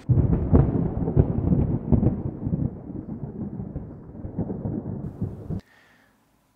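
Mains-powered hair dryer switched on and running, heard as a loud, ragged low rumble like air blowing across the microphone. It is switched off abruptly shortly before the end.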